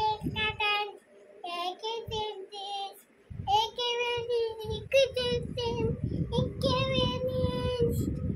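A toddler's high voice singing in drawn-out, wavering sing-song notes, with some pauses. From about three seconds in, low irregular bumping and rumbling runs underneath.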